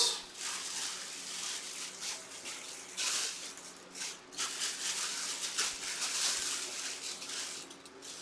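Plastic wrapping crinkling and rustling in uneven bursts as a football helmet is unwrapped by hand.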